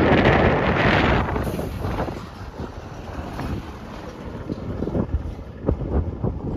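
Wind buffeting the microphone, heavy for the first second or so, then easing to lighter, uneven gusts.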